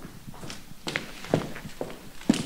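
Footsteps: four short steps about half a second apart as someone walks through a room.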